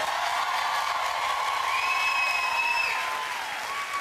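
Talk-show studio audience applauding a guest's welcome, with one long held whoop rising out of the crowd in the middle.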